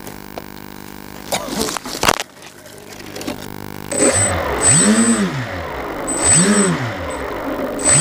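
Twin electric motors of a Twinstar 2 model plane, heard from its onboard camera. The motors whine up and back down twice from about halfway in, then climb to a steady higher pitch at the end as the plane takes off. Before that there is a steady electrical hum and a short burst of crackling clicks.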